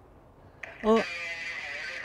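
A man's drawn-out, high-pitched exclamation of "oh", held for about a second, starting after a brief quiet moment.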